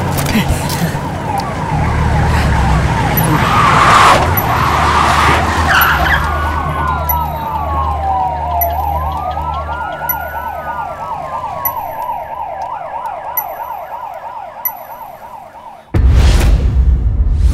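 Several emergency vehicle sirens sound at once: a fast-warbling yelp is joined in the middle by slower rising-and-falling wails, over a low drone. Together they fade away over the last few seconds.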